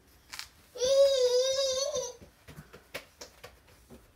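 A toddler's long, high-pitched wordless call, held for about a second and a half, with a few faint taps before and after it.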